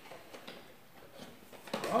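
A few faint taps and clicks from handling a mixing stick and plastic container; a man starts speaking near the end.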